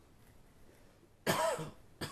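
A person's short, voiced cough, like clearing the throat, a little over a second in, with a second shorter one starting at the very end.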